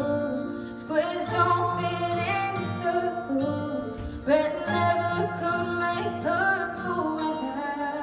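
A young woman singing a song live into a handheld microphone over instrumental accompaniment, heard through the hall's sound system, with sung notes sliding between pitches.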